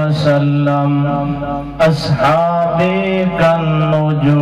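A man chanting a religious recitation in a slow melodic style, holding long steady notes, with a brief break about two seconds in.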